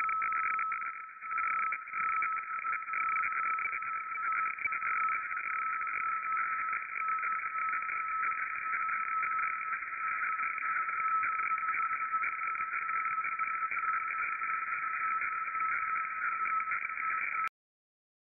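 Shortwave radiofax (weather fax) transmission from Russian station RBW, Murmansk, heard through an SDR receiver in upper sideband. It is a steady, rasping, scratchy tone band with a constant tone near its low edge while the image is being sent, and it cuts off suddenly near the end.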